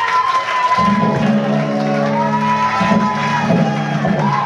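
A live psychedelic rock band playing: long sliding electric guitar notes over low held notes that come in about a second in, with the crowd cheering.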